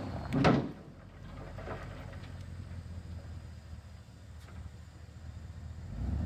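A dirt load sliding out of a raised dump-truck bed, with a short loud rush about half a second in, over the low steady running of the truck.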